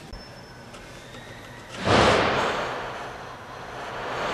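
A person blowing out one long, forceful breath close to the microphone, a sudden whoosh about two seconds in that tapers off; a second breath begins near the end.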